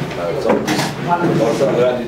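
A man speaking, addressing a room.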